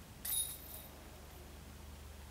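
A disc golf putt striking the basket's metal chains: one short jingle about a quarter second in, ringing briefly and fading.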